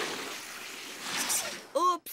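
Cartoon sound effect of a fire hose spraying a jet of water: a rush of water that fades over the first second, then a brief swish. A short vocal exclamation comes near the end.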